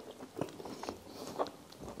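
Close-miked chewing: a mouthful of food being chewed, with a few soft, wet mouth clicks about half a second apart.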